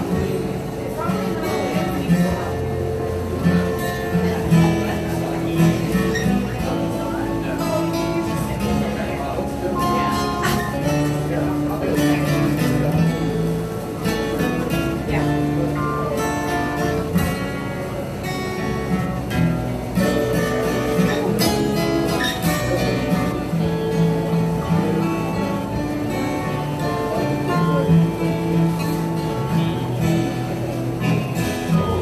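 Acoustic guitar played solo: an instrumental passage of plucked and strummed notes and chords.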